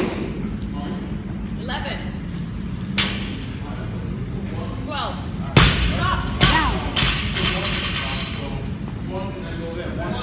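Loaded Rogue barbell dropped onto a rubber gym floor a little past halfway, landing with a heavy thud and bouncing twice more before settling. Two sharper knocks come earlier as the bar is lifted, over a steady low gym hum and background voices.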